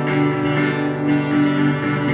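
Acoustic guitar strummed, ringing chords with no voice over them, an instrumental gap between sung lines of a live song.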